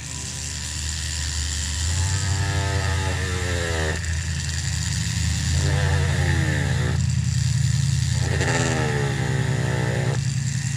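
Rotary carving tool running with a homemade eye bit, a quarter-inch bolt with its head rounded and hollowed, cutting round eye rings into basswood. Three times the pitch sinks as the bit bears into the wood, each time breaking off suddenly.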